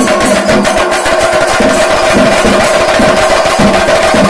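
Kerala temple percussion, chenda drums with cymbals, played in a fast, dense rhythm, with a steady held tone above it.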